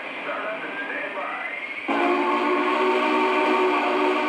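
A model Union Pacific Big Boy 4014 steam locomotive's onboard sound system running its startup sequence. Steam hiss with a slowly rising whine comes first, then, about two seconds in, a loud, steady steam whistle starts suddenly.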